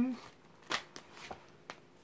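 A deck of tarot cards being shuffled by hand: a handful of short, soft card flicks and taps, spread over about a second.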